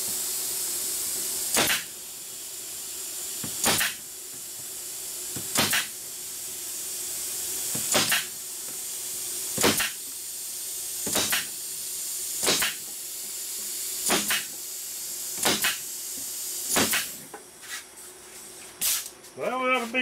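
Pneumatic nailer firing nails into wooden beehive frames held in an assembly jig: about ten sharp shots, one every second and a half to two seconds, over a steady hiss. The shots stop a few seconds before the end.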